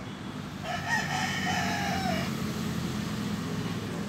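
A rooster crowing once, a single call of about a second and a half, over a steady low hum.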